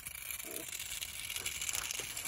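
Two Beyblade spinning tops spinning on rough pavement, a faint, steady sound with no sharp knocks.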